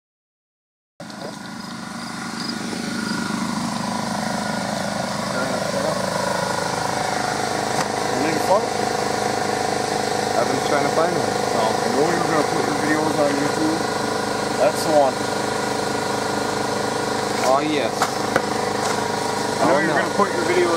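A steady machine hum holding several fixed pitches, which fades in over the first few seconds and then runs evenly. From about eight seconds in, indistinct voice sounds come in over it.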